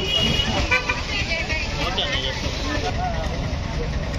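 Busy street ambience: a steady rumble of traffic and the chatter of a crowd, with short vehicle horn toots near the start and again about two seconds in.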